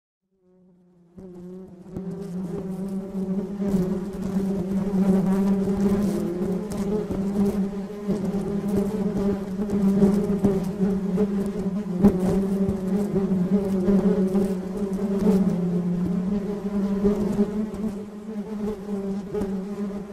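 Honeybee colony buzzing: a steady, dense hum of many wings with a low pitch and overtones above it, fading in over the first two seconds. Faint small crackles run through the hum.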